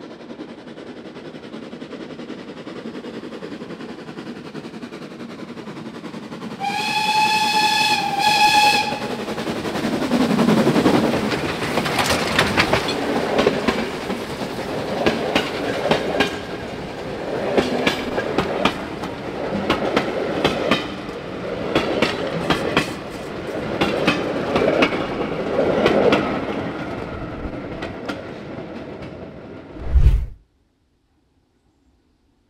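A steam train approaching and passing close by: the locomotive's steam whistle sounds one blast of about two seconds about seven seconds in, the engine then goes past, and the carriages follow with their wheels clattering over the rail joints in repeated clusters of clicks.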